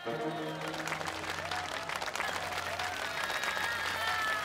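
The last notes of a 25-string gayageum ensemble ring out and die away in the first second, and an audience breaks into applause, with a few voices calling out through the clapping.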